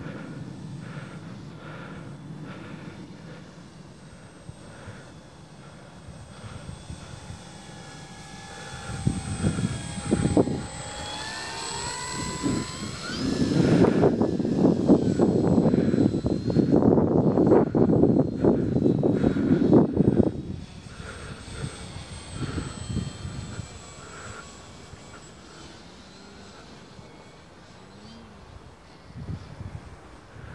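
Electric motor and propeller of a Dynam Beaver RC model plane making a low pass with flaps down: a faint hum that grows into a whine gliding in pitch as the plane passes, about ten seconds in. A loud low rumble, likely wind buffeting the microphone, sits in the middle stretch, then the motor fades back to a faint hum.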